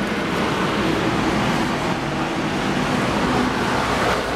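Steady city street traffic noise: a continuous wash of passing vehicles with no sudden events.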